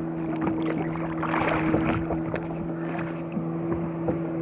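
Jet ski engine idling with a steady low hum, over rushing wind and water noise.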